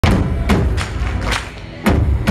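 Live rock band playing an instrumental intro: heavy drum hits about every half second over a steady low rumble, loud in the room.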